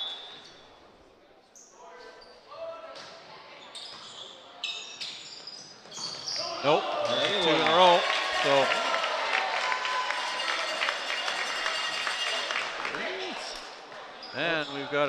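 Volleyball being served and played, with a few sharp ball hits, then a loud burst of shouting and cheering from players and spectators from about six seconds in as the point is won. The cheering eases off near the end.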